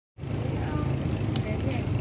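A steady low rumble, like an engine running nearby, with faint voices over it.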